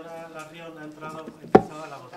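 A single sharp thump about one and a half seconds in, the desk's gooseneck microphone being bumped by hand, heard over faint talk in the chamber.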